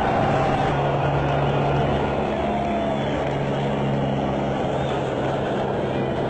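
A vehicle engine droning steadily under a dense wash of noise.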